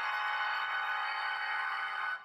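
A sustained synthesized chord, a short musical sound effect, held at an even level with no change in pitch.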